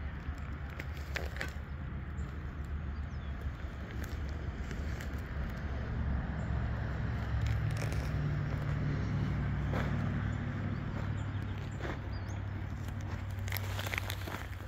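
Low, steady outdoor rumble that grows louder about six seconds in and eases again near the end, with a few scattered light clicks and crackles over it.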